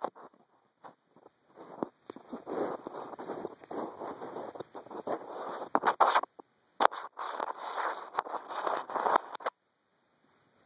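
Close scratching and rubbing against the microphone from hands handling the camera, with several sharp clicks. It pauses briefly about two-thirds of the way through and cuts off suddenly just before the end.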